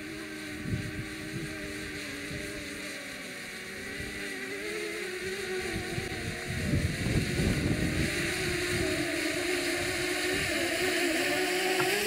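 DJI Mavic quadcopter's propellers humming steadily as it descends to land, growing louder as it comes closer.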